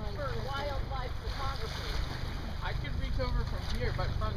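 Wind rumbling on the microphone out on open water, with many short, quick, chirp-like pitched calls or voice sounds over it.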